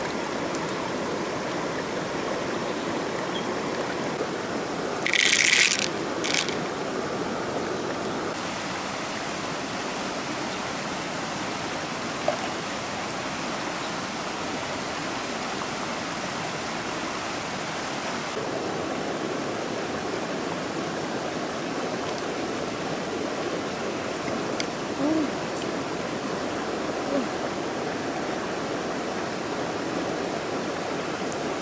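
Shallow river running over rocks in a steady rush of water. A brief, louder hiss comes about five seconds in, and a few faint clicks follow later.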